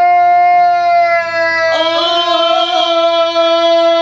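Ganga, the traditional unaccompanied singing of Herzegovina: several men's voices holding one long, loud, steady note together. A voice comes back in a little before halfway, adding a brighter edge to the chord.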